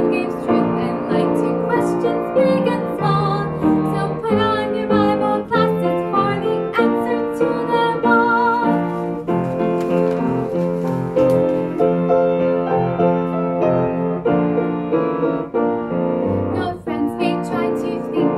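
A children's worship song: a woman singing over piano accompaniment, the music running without a break.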